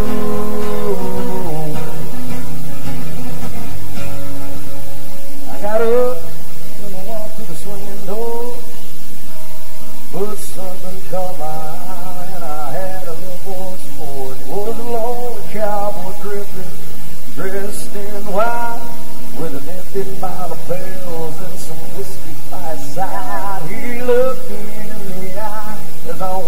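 Live acoustic country music: two acoustic guitars playing, with a man's singing voice over them from about five seconds in.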